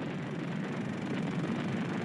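Steady low drone of aircraft engines, a dense even rumble without distinct beats.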